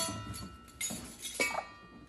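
Metal measuring spoons on a ring clinking against each other, a few light clinks about a second apart that ring on briefly.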